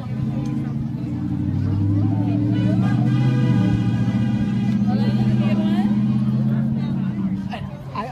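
A heavy vehicle's engine running close by on the road, a low steady drone that swells over the first couple of seconds and fades away near the end, with crowd voices around it.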